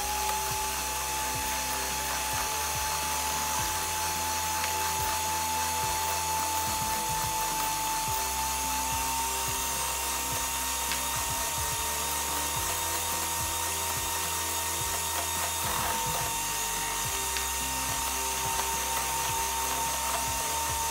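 Ikon electric hand mixer running at a steady speed, its beaters whipping eggs and sugar in a stainless steel bowl: a constant motor whine that starts up at the very beginning and steps up slightly in pitch about halfway through.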